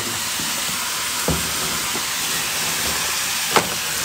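A steady hiss, with two light knocks, one about a second in and one near the end.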